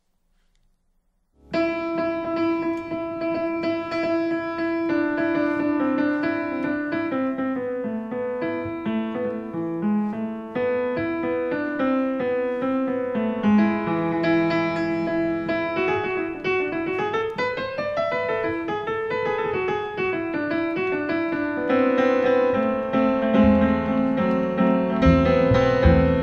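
Piano playing a jazz-tinged melody with quick runs, starting about a second and a half in after a brief silence; one run climbs and falls back in the middle. Near the end deeper notes and beats join underneath.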